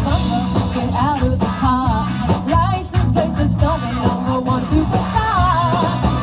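A live pop-rock band playing through a PA: drums, electric guitars, bass and keyboard under a female lead vocal.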